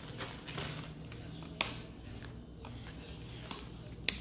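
Faint handling sounds of objects being moved on a wooden table: a few light clicks and taps, the clearest about one and a half seconds in, over a low steady hum.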